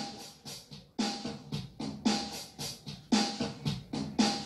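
Acoustic guitar strummed in a rhythmic pattern of sharp, percussive strokes, several a second, as an instrumental intro.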